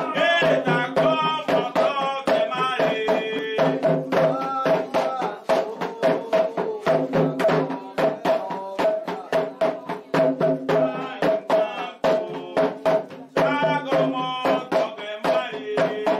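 Candomblé atabaque drums playing a fast, steady rhythm for the orixá's dance (the 'rum'). Voices sing a chant over it near the start and again near the end.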